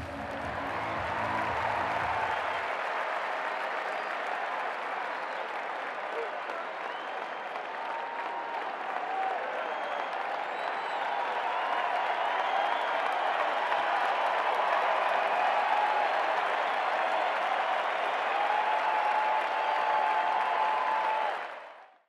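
Cricket ground crowd applauding steadily, with scattered voices rising above the clapping; it fades out right at the end.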